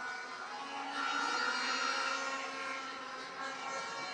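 A steady droning background with several held tones, at moderate level and without speech.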